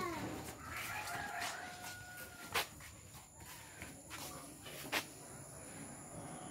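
A rooster crowing once, one long call that ends about two seconds in, followed by two sharp knocks.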